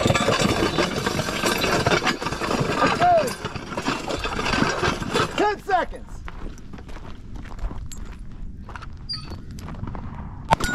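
A sled loaded with weight plates dragged across loose gravel, scraping loudly and continuously. About six seconds in the scraping stops, and running footsteps crunch on the gravel as separate sharp steps.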